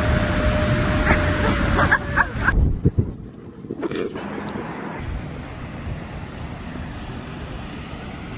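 Steady roar of Niagara Falls mixed with wind on the microphone, with young women whooping and cheering over it. About two and a half seconds in the sound cuts abruptly to a much quieter, steady outdoor background.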